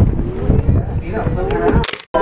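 Several people's voices giving long, drawn-out exclamations over low wind rumble on the microphone and boat noise. The sound drops away and cuts off at the very end.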